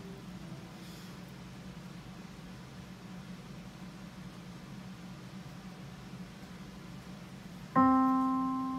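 A digital piano on its grand piano voice sounds a single C, around middle C, struck firmly near the end and ringing on as it fades. Before the note there is only a steady low hum.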